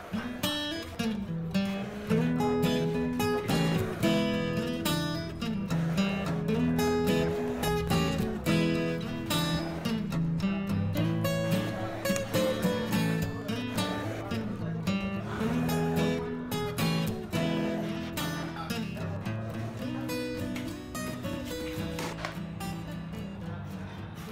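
Background music: acoustic guitar strummed with a steady rhythm.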